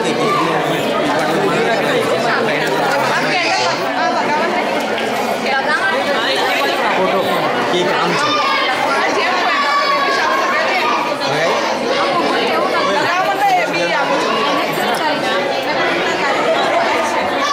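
Many people talking at once: a steady, loud hubbub of overlapping, indistinct voices.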